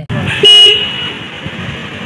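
Bajaj Pulsar P150's single electric horn giving one short toot about half a second in.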